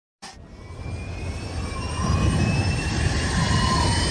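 Intro riser sound effect: a rumbling whoosh that swells steadily louder, with faint high tones gliding slowly upward.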